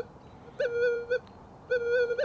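Minelab Manticore metal detector in its Gold Field program sounding two steady mid-pitched tones, each about half a second long, as the coil is swept back and forth over a small gold nugget. The nugget is at the edge of detection range: it gives an audio response but registers no target ID.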